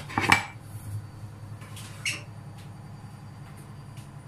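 Sharp clinks of crockery: two close together at the start and a lighter one about two seconds in, over a steady low hum.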